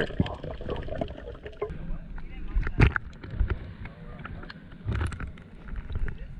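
Water sloshing and gurgling around a camera at the surface, with a few sharp knocks.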